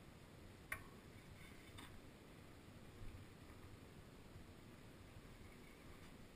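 Near silence, broken by a sharp click about a second in, a fainter click a second later and a soft low thump around the middle.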